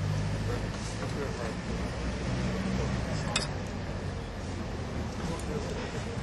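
Steady low rumble of city traffic, with one sharp click of a knife against a china plate a little over three seconds in, as chopped onion is scraped into a bowl.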